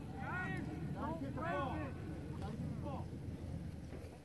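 Distant voices shouting short calls across a lacrosse field, four or five brief calls, over a steady low rumble.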